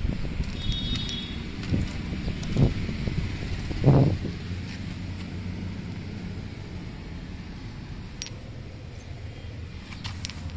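A few dull thumps from handling an open car door, the loudest about four seconds in, over a steady low hum.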